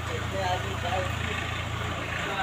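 Indistinct voices of several people talking in the background over a steady low rumble, which fades near the end.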